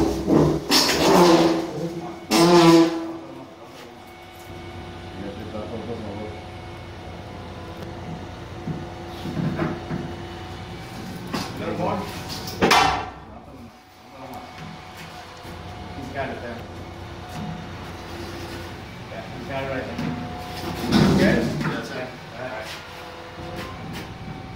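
Workers calling out to each other, with knocks and scrapes as a heavy metal frame hanging from crane slings is guided out through a window, over a steady low hum.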